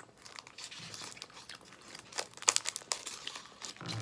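Wrapper crinkling as it is peeled off a chocolate by hand: a run of irregular crackles, thickest about two to three seconds in.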